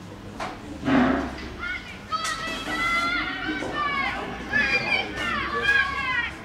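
Young spectators shouting and cheering the runners on in high-pitched, overlapping calls through most of the race. A sharp crack comes about half a second in and a louder burst about a second in, around the start.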